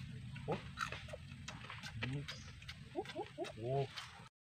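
Quiet, short nasal 'mm' sounds and grunts from people eating, with a quick run of four or five of them near the end.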